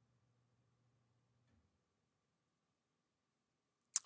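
Near silence: a screen recording with only a very faint low hum that stops about a third of the way in. A man's voice begins right at the very end.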